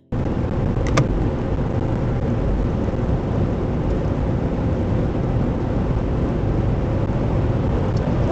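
Steady road and engine noise inside a car driving at speed, picked up by a dashcam microphone, with one sharp click about a second in.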